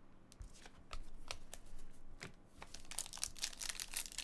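Trading cards handled with light scattered ticks and scrapes, then a foil card pack crinkling more densely as it is handled and opened near the end.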